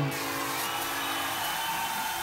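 CNC cutting table's cutting head hissing steadily as it cuts steel plate.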